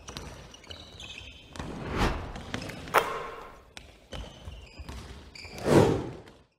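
Sound effects of an animated video intro: whooshes that swell and fade, a sharp hit about three seconds in, and a few short, high, ringing tones, with a final whoosh near the end.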